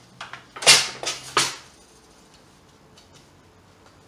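A cut weft thread being pulled out through the warp threads of a floor loom, in three quick rasping swishes, while a mistaken pick is unpicked.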